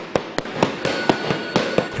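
Boxing gloves hitting pads and punching bags, several sharp smacks about three or four a second at an irregular spacing, as a group throws uppercuts and straight punches.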